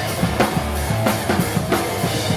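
Hardcore punk band playing live at full volume: distorted guitars and bass over a fast, steady drum beat, about five hits a second.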